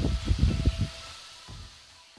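Handling noise of a phone being picked up: a quick run of dull thumps and rumbling rubs on the microphone in the first second, then fading away.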